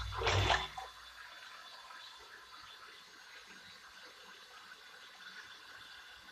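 A short rush of water in the first second, then only a faint steady hiss.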